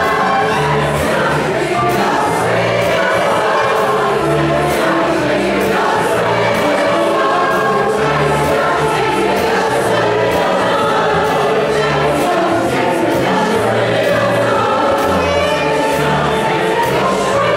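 Large mixed choir singing in full voice, backed by a small band with double bass and piano. Under the voices a bass line moves note by note over a steady beat.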